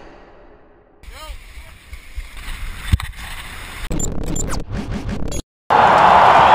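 Action-camera audio from a ski run, spliced in short clips with abrupt cuts to silence. Near the end comes a loud steady rush of wind on the camera's microphone as the skier goes down the slope.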